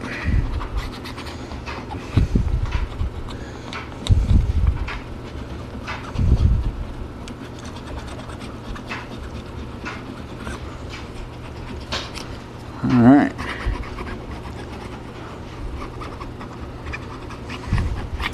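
A dog panting close by while a bone folder rubs mull cloth into wet glue on a book spine, with a few bursts of handling noise in the first seconds and one short voiced sound about thirteen seconds in.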